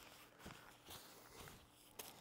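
Near silence: room tone, with a few faint, soft handling sounds.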